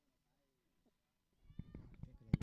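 Near silence, then about a second and a half in a short click and a brief rising vocal sound, like a voice starting up.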